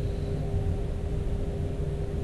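Steady background drone of running machinery in a ship's engine room: a low rumble with a constant hum tone, and no distinct tool strikes.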